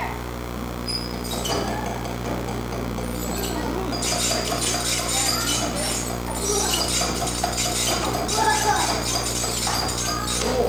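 Background chatter of voices with frequent clinking and clicking, denser from about four seconds in, over a steady low hum.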